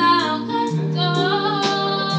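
A woman singing live into a handheld microphone over backing music, holding sliding sung notes above steady sustained bass notes.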